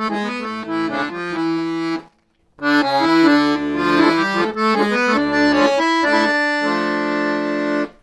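Weltmeister piano accordion playing a gypsy-jazz melodic run over an A minor 6 chord, with left-hand chords underneath. The run stops briefly about two seconds in, then resumes and ends on a long held chord that cuts off abruptly.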